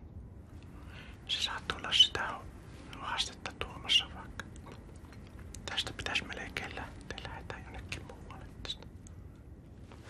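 A man whispering and muttering under his breath in a few short bursts, with scattered sharp clicks among them.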